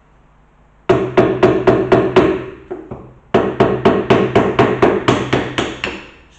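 A small hammer tapping the handle of a tack lifter to drive its forked tip under a stubborn upholstery staple in a wooden stool frame. It comes in two runs of quick, even taps, about five a second, the first starting about a second in and the second, longer run about three seconds in.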